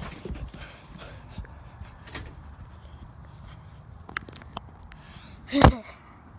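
Handling noise from a phone being carried while someone moves about, with a few light clicks and one sharp, loud thump near the end.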